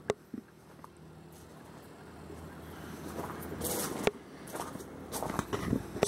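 Footsteps crunching on gravel, with a few sharp clicks. A grainy noise swells over about three seconds and drops off sharply about four seconds in.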